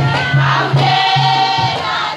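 Maoulida shengué, a Mahoran devotional chant: a chorus of voices singing together over a steady, pulsing beat of about two and a half beats a second.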